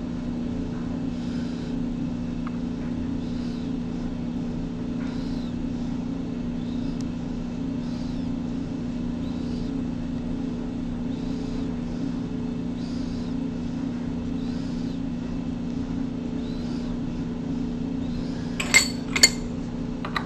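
Hand tapping of a threaded hole with a number three tap in a T-handle tap wrench, faint short creaks about every second and a half as the tap cuts, over a steady machine hum. Near the end come a few sharp metallic clinks.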